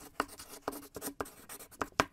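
Chalk writing on a blackboard: a quick run of short strokes, about three a second.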